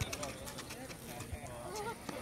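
Players and spectators shouting and calling across a futsal game, over sharp, irregular taps of running feet and the ball on the hard asphalt court.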